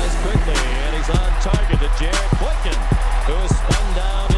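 Hip-hop music with a heavy bass and a steady beat.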